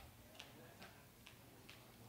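Near silence: room tone with faint, evenly spaced clicks, a little over two a second.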